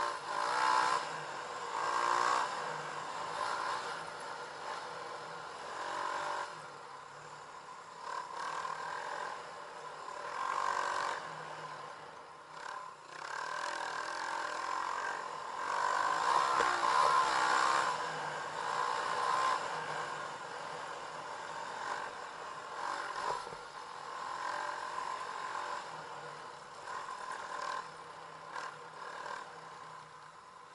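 Dirt bike engine on the move, the throttle opening and easing off again and again, with the bike's rattle over the rough sandy track.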